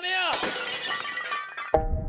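A shouted voice is pitched sharply downward, then a glass-shattering sound effect crashes and fades out over about a second. Just before the end, a hip-hop track starts with a sudden bass hit and a steady beat.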